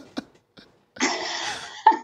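A person coughs once, a harsh burst of breath about a second in that fades out. A short voiced sound follows near the end.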